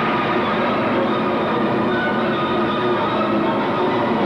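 Two pairs of quad roller skates rolling on a wooden rink floor, a steady rumble, with faint music behind it.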